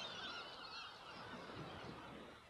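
Faint bird calls, fading away.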